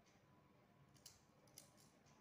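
Near silence with a few faint, light clicks of plastic basket-weaving strands being pressed and tucked by hand, once about a second in and twice more near the end.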